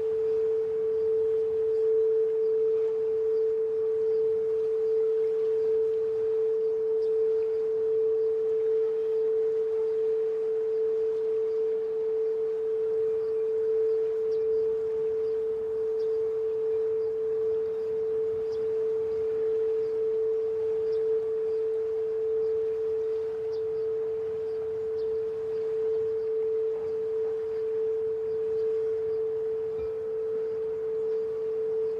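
Frosted quartz crystal singing bowl being rimmed with a wand, holding one steady pure tone with a slight slow waver in loudness.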